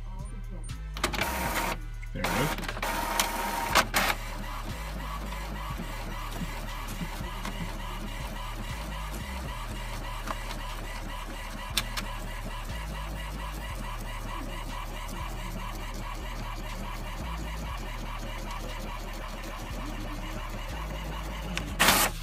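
HP Envy 4500 inkjet all-in-one printing a page. Loud noisy feeding sounds come in the first few seconds as the sheet is drawn in, then a long steady stretch of print-carriage and roller noise, and more loud noises right at the end as the page comes out.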